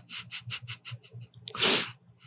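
A man laughing under his breath: a run of short puffs of air, about five a second, then a longer, louder breath out near the end.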